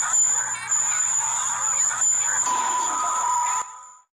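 A dense jumble of several overlapping, distorted video soundtracks played at once, with a steady high-pitched whine running through it. A second, lower steady tone joins past the halfway mark, and the whole mix drops away sharply shortly before the end.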